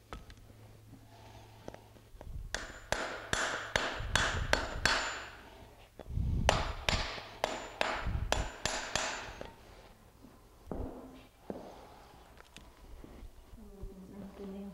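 Farrier's hammer nailing a steel horseshoe onto a horse's hoof: two quick runs of ringing metal-on-metal strikes, about eight blows each, a second apart, then a couple of lighter knocks.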